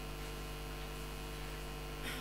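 Steady low electrical hum with faint background hiss.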